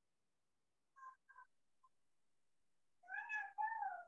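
A cat meowing faintly: two short mews about a second in, then a longer meow with a wavering pitch near the end.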